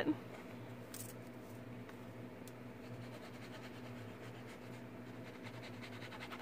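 Faint scratching and rubbing of an ink pad dragged against the edges of embossed copper foil paper, over a steady low hum, with a light click about a second in.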